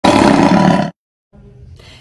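Opening intro sting: a loud, roar-like burst lasting just under a second that cuts off abruptly. After a brief silence, faint room noise follows.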